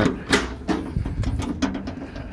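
A paddle latch on an aluminum truck-body compartment door with a three-point lock clicks open, and the door is swung open with a series of small metal clicks and rattles.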